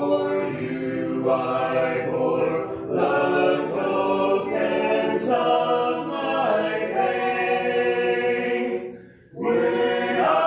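A congregation singing a hymn a cappella in harmony, many unaccompanied voices holding sustained notes. There is a short break for breath near the end before the next line begins.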